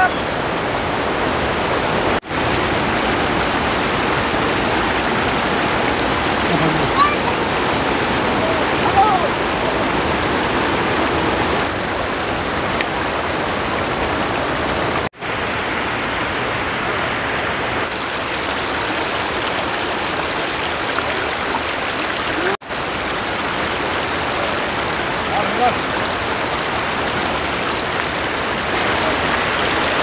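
Steady rush of floodwater from an overflowing village tank pouring over a low bank and through fishing nets, with brief dropouts at edits.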